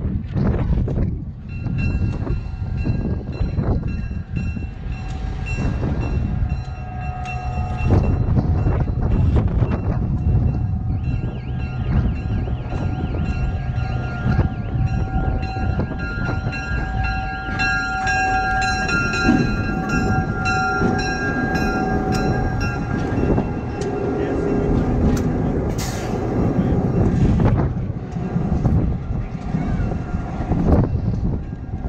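Diesel road-switcher locomotive running as it rolls slowly past close by, a steady low rumble, with a steady high whining tone over it for most of the time.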